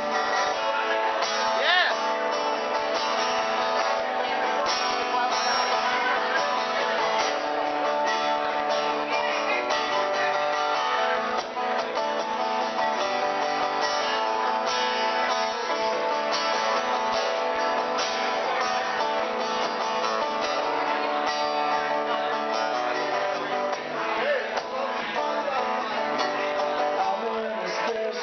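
Acoustic guitar strummed steadily through a continuous passage of chords.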